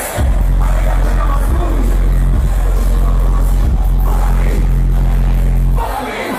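Live hip hop music played loud through a festival sound system: a heavy bass beat with vocals over it. The bass comes in just after the start and drops out shortly before the end.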